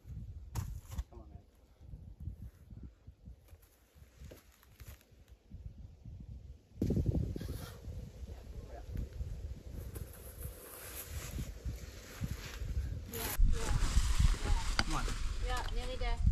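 Uneven low rumbling of wind on the microphone with faint rustling over it, louder from about seven seconds in and again near the end.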